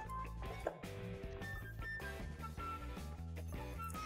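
Quiet background music: short, separate melodic notes over a steady low bass.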